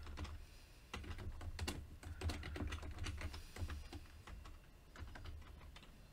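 Typing on a computer keyboard: irregular runs of quick key clicks with short pauses between them, over a steady low hum.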